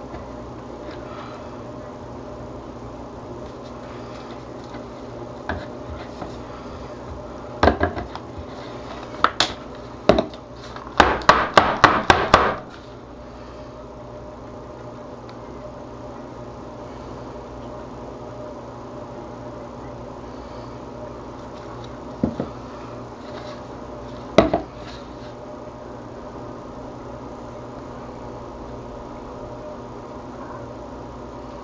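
A stirring utensil knocking against plastic jugs of soap batter: a few separate knocks, then a quick run of about eight taps a little after ten seconds in, and two more knocks later, over a steady background hum.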